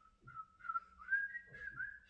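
A man whistling a short tune in a string of wavering notes that climb a little in pitch.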